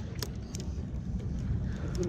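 Wind rumbling on the microphone out on open water, an uneven low buffeting with no steady engine note. A few light clicks come in the first half second.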